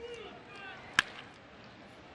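A single sharp crack of a wooden baseball bat hitting a pitched ball about a second in, over faint crowd voices.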